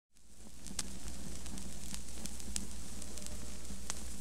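Vinyl record surface noise as the stylus runs in the lead-in groove of the LP: a steady faint crackle with scattered sharp clicks over a low hum. It fades in over the first half second.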